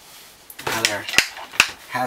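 Two sharp metal clinks, less than half a second apart, from threaded iron and brass gas pipe fittings knocking together as they are handled, between stretches of a man speaking.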